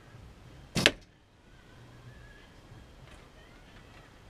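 A Win&Win recurve bow being shot: the string is released with one sharp snap a little under a second in.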